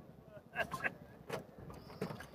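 A few faint clicks and knocks from a Toyota Vitz's door lock as the car is unlocked, with faint voices.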